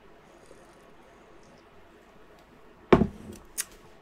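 A glass mug set down on a desk about three seconds in: one heavy thump, then a lighter click a moment later, after a few seconds of quiet room tone.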